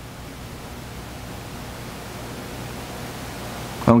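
Steady hiss with a faint low hum underneath, slowly growing louder: plain room tone with no distinct event. A man's voice starts again right at the end.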